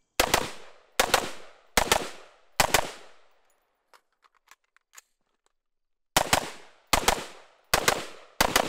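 AR-style rifle fired in quick pairs: four double shots about a second apart, each ringing off; then a gap of about three seconds with a few light clicks of a magazine change, and three more pairs starting about six seconds in.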